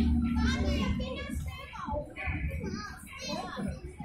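Young children's voices, calling out and chattering as they play, with a low steady hum underneath that fades about a second in.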